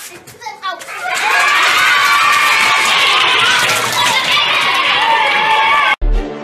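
A room full of children shouting at once, the many voices loud and dense from about a second in, and cut off suddenly at the end.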